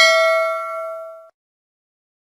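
Notification-bell 'ding' sound effect from a subscribe-button animation: a single bell tone ringing and fading, then cut off sharply a little over a second in.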